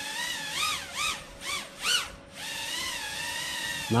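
Betafpv Pavo 25 V2 ducted quadcopter's brushless motors and props whining in a hover. The pitch rises and falls with four quick throttle blips, dips briefly about halfway through, then settles into a steady hover whine.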